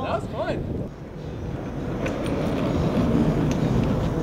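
A short burst of a voice at the start, then steady outdoor street ambience: a low rumble of wind and distant traffic that slowly grows louder.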